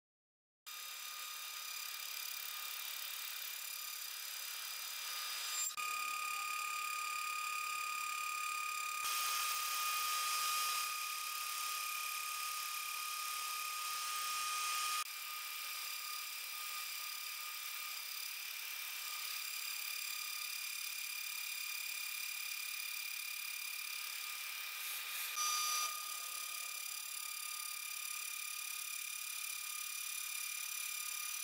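CNC milling spindle running with a small end mill cutting an aluminum plate: a steady whine with cutting noise. It is louder between about 9 and 15 seconds in, with brief changes near 6 and 25 seconds.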